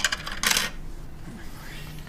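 A quick run of small, hard clicks and clatters from a small object being handled, stopping a little under a second in; a low steady hum follows.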